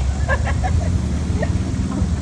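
A steady low rumble, like an engine running nearby, with faint scattered voices over it.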